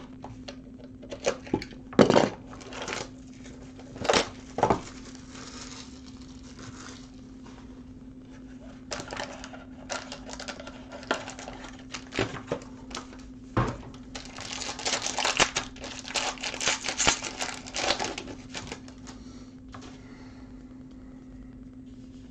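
A sealed hockey card box being handled and opened: scattered clicks and knocks of cardboard and plastic on the table, then plastic wrapping crinkling and tearing for a few seconds in the second half. A faint steady low hum runs underneath.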